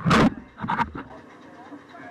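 Pool water splashing close to the microphone of a waterproof action camera, two loud bursts in the first second, the louder one right at the start. People chatting quietly in the background after that.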